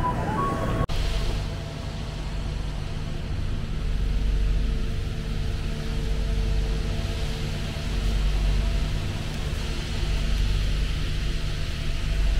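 A passenger train coach's steady low rumble and hum, heard from inside the coach. About a second in, a brief tonal sound from the platform cuts off abruptly and the steady rumble takes over.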